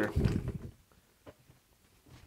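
Antique hand-cranked breast drill with a spade bit being pulled out of a partly bored hole in a wooden board: a short low rumble for about half a second, then a couple of faint clicks as the drill is handled.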